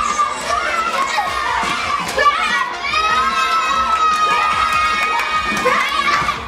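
A group of children shouting and cheering, several high voices overlapping, with long held high-pitched yells.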